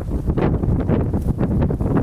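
Strong wind buffeting the microphone: a heavy, uneven low rumble that runs without a break.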